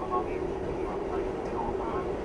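Interior running noise of an R68A New York City subway car moving through a tunnel: a steady rumble with a constant low hum.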